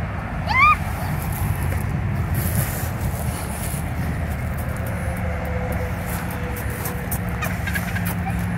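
John Deere 5055E tractor's diesel engine running steadily as the tractor drives forward. A short, high, rising squeal comes about half a second in.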